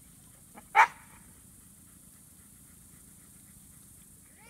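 A dog barks once, a single short, loud bark about a second in.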